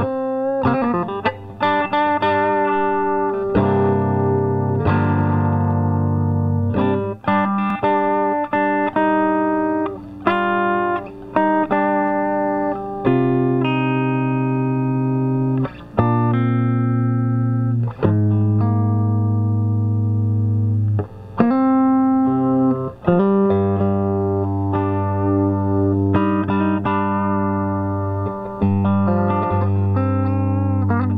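Esquire five-string electric guitar played through an amplifier and an Ampeg 810 cabinet: a riff of sustained low notes with higher notes ringing over them, broken by short pauses between phrases.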